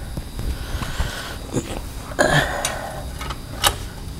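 Footsteps on a concrete shop floor with a few sharp clicks, and a short rushing noise a little past the middle.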